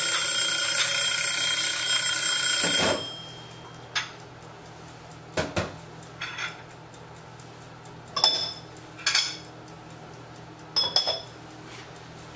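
Kitchen timer ringing continuously with a bright, bell-like tone for about three seconds, then stopping abruptly, followed by a few light clinks of dishes and utensils.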